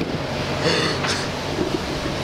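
A car engine idling with a steady low hum, mixed with wind buffeting the microphone.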